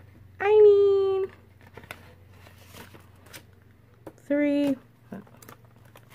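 Two drawn-out spoken syllables with faint rustling and clicking of paper bills and plastic binder envelopes being handled between them, over a low steady hum.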